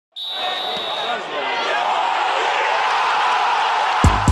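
A crowd's din of many overlapping voices, growing slightly louder. A thin high tone sounds through the first second.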